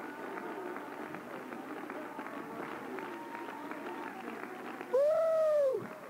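Congregation rejoicing aloud: many overlapping voices calling out over hand clapping, with one loud held shout that rises and falls in pitch about five seconds in.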